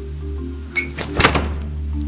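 Wooden bedroom door slammed shut to yank out a loose tooth tied to it with string: a quick rattle of knocks with one loud bang about halfway through. Background music with steady bass notes plays throughout.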